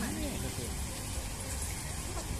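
Steady outdoor background noise with a low, fluctuating rumble, and faint voices of people nearby, with a brief voice sound at the very start; no music is playing.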